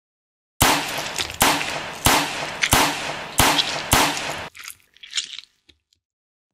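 Six sharp bangs at a steady beat, a little under two a second, each dying away quickly, followed by a few fainter scuffs near the end.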